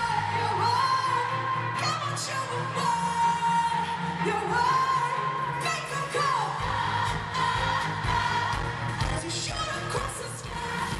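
Live amplified pop song: a female lead vocal holds long notes with slides in pitch over drums and bass, heard through the reverberant arena PA from a small handheld camera in the stands. The deep bass drops away for a few seconds in the middle, then comes back in.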